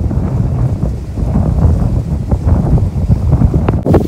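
Wind buffeting the phone's microphone: a loud, gusting low rumble that rises and falls unevenly. A short knock near the end.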